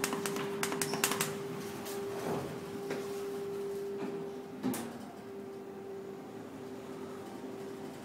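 Isralift traction elevator car: quick clicks of the car-panel buttons being pressed in the first second, over a steady hum. A single sharp knock comes a little past halfway as the doors shut, and the hum carries on after.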